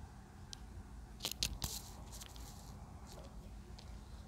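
Light clicks and taps of a small ceramic ramekin against a glass bowl as garlic powder is tipped out of it: a quick cluster of sharp clicks about a second in, then a few fainter taps.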